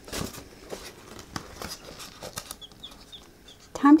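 Newly hatched chicks peeping, a string of short, high, falling cheeps in the second half, over rustling and light knocks as they are handled into a polystyrene brooder box.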